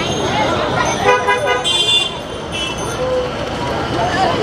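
Street traffic with vehicle horns tooting: a longer toot about a second in, then two shorter, higher-pitched toots, over a background of traffic and people's voices.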